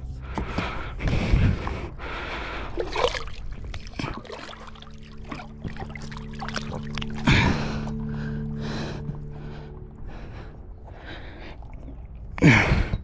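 Water splashing around a paddleboard as a sea turtle is grabbed at the surface and hauled up onto the board. There are several short splashy bursts, the loudest about seven seconds in.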